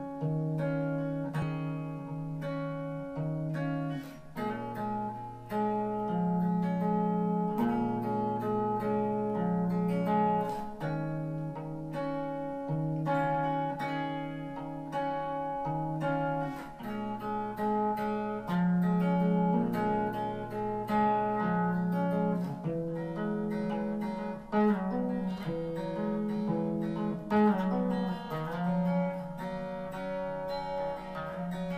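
Guitar playing slow picked chords and melodic notes, each note left ringing over the others.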